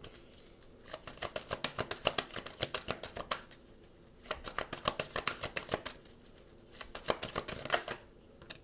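A deck of tarot cards being shuffled by hand: three bouts of quick, rapid card flicks with short pauses between them.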